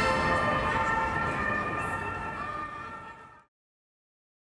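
Accordion music ending on held notes that fade out, cutting off to silence about three and a half seconds in.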